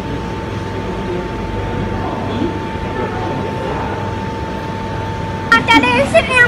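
Street background noise: a steady low traffic rumble with a thin, steady high tone running through it. A loud voice breaks in near the end.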